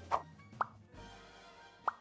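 Three short rising 'plop' sound effects, near the start, about half a second in and near the end, over soft background music.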